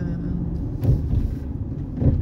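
Low rumble of a car driving on the road, with a voice holding one steady note over it and a brief click about a second in.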